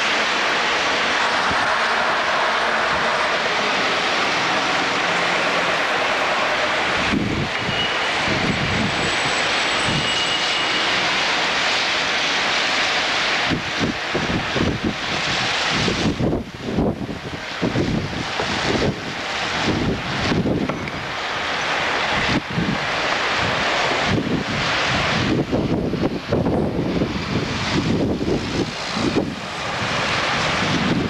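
Steady rushing noise, turning after about seven seconds into irregular low buffeting: wind on the microphone outdoors in a snowy street.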